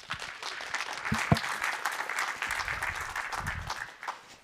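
Audience applauding, a dense patter of many hands that fades out at the end.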